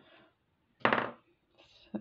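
Seed beads rattling inside their tube as it is handled and set down, a short clattering burst about a second in, followed by faint handling noise.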